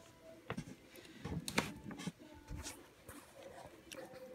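Three-week-old puppies moving about on blanket bedding as they learn to walk: scattered soft taps, scuffs and rustles of small paws and bodies.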